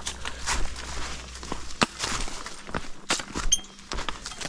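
Footsteps on a trail covered in dry fallen leaves: an irregular run of crunches and scuffs while walking downhill.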